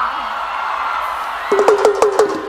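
Crowd noise from a large concert audience, with a sung note trailing off at the start. About one and a half seconds in, a guitar starts a quick run of repeated plucked notes on one pitch.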